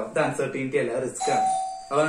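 A man lecturing, speaking almost throughout. A little past one second in, a brief steady chime-like tone of one pitch sounds for under a second over his voice.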